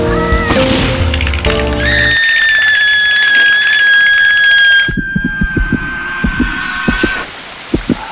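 Cartoon score with sustained chords, cut off about two seconds in by a long, high-pitched held scream from a cartoon character that lasts about five seconds, its pitch slowly sinking. A run of irregular soft thumps comes under the last few seconds of the scream.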